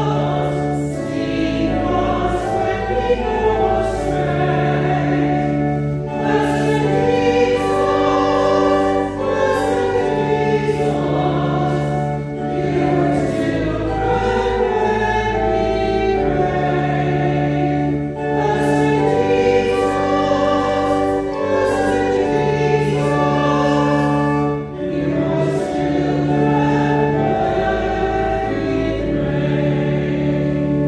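A hymn sung by a group of voices with organ accompaniment, in slow, held chords that change every couple of seconds.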